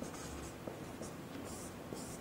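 Faint sound of a marker pen writing on a whiteboard: a few short strokes with light ticks.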